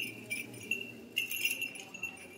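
Several brief, light metallic jingles, four or five short ones, over low room noise in a stone interior.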